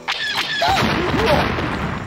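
A loud explosion sound effect in a toy battle: a dense rush of noise lasting about two seconds, with faint rising and falling squeals inside it.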